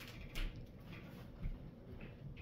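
Two soft, brief knocks or rustles, about half a second and a second and a half in, from hands taking hold of the top of a standing heavy punching bag, over faint room noise.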